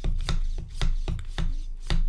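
Hand vacuum pump on the vacuum valve of a Nauticam underwater camera housing, worked in quick short strokes: a regular series of clicks and rasps, about four a second. These are the extra pumps given after the vacuum is reached, to draw out the last bit of air.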